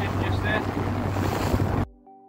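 Two-stroke outboard motor running with a steady hum under heavy wind noise on the microphone and choppy water splashing around the hull; the sound cuts off suddenly near the end.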